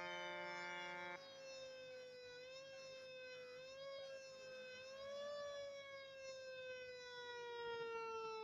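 Fire truck siren: a steady multi-tone horn blast cuts off about a second in. It leaves a single siren tone that wavers slightly, then slowly falls in pitch as the mechanical siren winds down.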